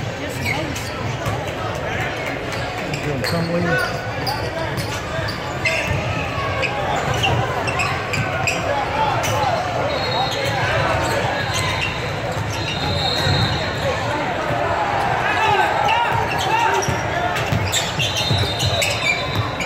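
Basketball dribbled and bouncing on a hardwood gym floor during play, amid background voices.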